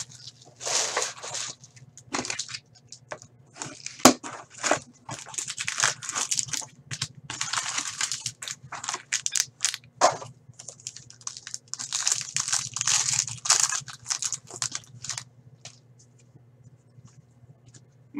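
Plastic wrapping being torn off a hockey card box and crinkled by hand, with the foil card packs rustling as they are handled, in irregular bursts. One sharp click about four seconds in is the loudest sound; it goes quieter near the end.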